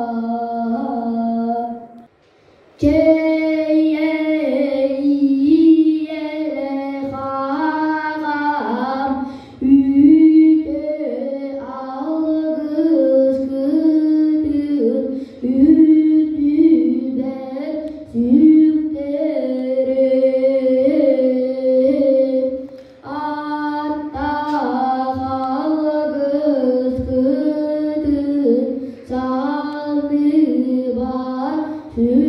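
A young boy singing a Sakha toyuk solo and unaccompanied: a chanted line of held, stepped notes with quick warbling ornaments. He breaks off for a breath about two seconds in, then sings on.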